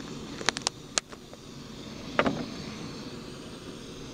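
Small gas canister backpacking stove burning steadily under a steel cup of water as it heats. A few sharp clicks and taps land near the start, about a second in and about two seconds in.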